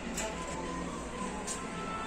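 Background music playing steadily, with a couple of short clicks.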